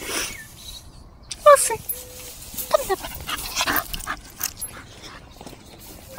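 A dog whimpering, with two short falling whines about one and a half and three seconds in, over brushing noise from the long grass it is pushing through.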